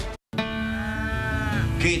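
Dairy cow mooing once, a long call that rises and then falls in pitch, coming in after a brief moment of silence, with quiet music underneath.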